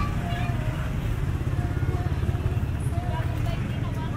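Busy street ambience: a steady low rumble of a motor vehicle engine running close by, with scattered voices of people talking around the food stalls.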